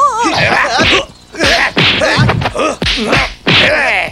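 Kung fu film fight sound effects: a quick series of whacks from blows landing, mixed with the fighters' shouts and grunts.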